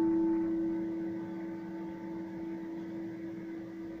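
Background music ending on a held keyboard chord, struck just before and slowly fading away.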